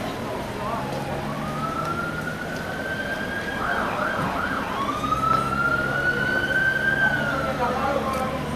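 Police car siren sounding: a long wail rising slowly in pitch, a quick burst of three short yelps about four seconds in, then a second long wail that rises and falls away near the end.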